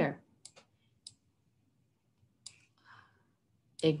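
A few faint, separate clicks, scattered about half a second, one second and two and a half seconds in, with a soft brief scuff near three seconds, made while lines are drawn onto an on-screen slide.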